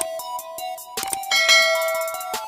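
Light outro music with a plucky melody, with a click near the start and another about a second in, followed by a bright bell 'ding' sound effect that rings out for about a second: the notification-bell chime of an animated subscribe button.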